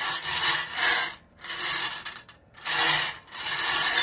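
Bingo balls rattling and tumbling inside a hand-cranked wire bingo cage as it is turned, in several surges with short pauses between.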